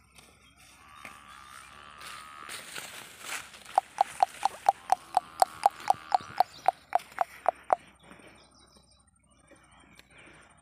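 A bird calling in a fast, even series of about eighteen short, sharp calls, about four to five a second, lasting some four seconds. It is preceded by a rustle.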